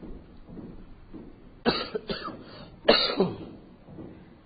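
A man coughing close to the microphone: two quick coughs about a second and a half in, then a louder cough about a second later.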